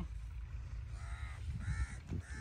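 Crows cawing: two short calls in the second half, the second higher-pitched than the first.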